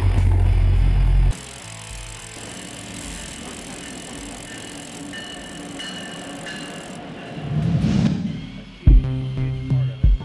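Hammer drill boring a 5/8-inch injection hole through the railroad track base, loud for about the first second and then cut off abruptly. Quieter background music follows, with a rising whoosh and then a sharp thump near the end.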